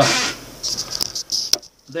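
Handling of a plastic deli cup, a light rustle with two sharp clicks about a second apart, as the lid is pressed on.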